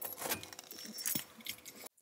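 Faint jingling of keys with a few light, irregular clicks as the minivan is switched off.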